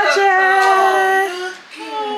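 A high-pitched voice holding a long, steady drawn-out note for over a second, like a sung greeting, then a second, quieter held note near the end.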